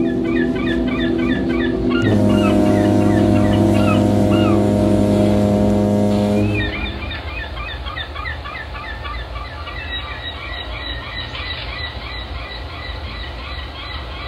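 A sound bed of bird chirping over sustained droning tones. A louder, low held tone comes in about two seconds in and cuts off about halfway through, leaving the chirping birds over a soft steady background.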